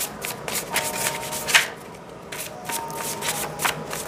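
A deck of divination cards being shuffled by hand: a quick, irregular run of papery clicks and slaps, with a short pause about two seconds in.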